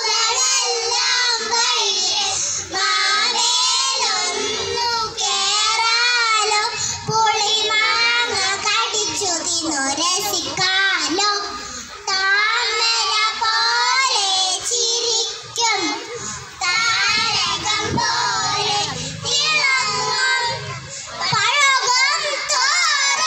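A group of kindergarten children singing a Malayalam song together, their voices continuous with short breaks between phrases.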